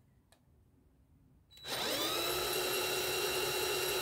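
20 V cordless drill starting about one and a half seconds in, rising quickly in pitch, then running steadily at full speed while turning a wind turbine generator's shaft at about 500 RPM.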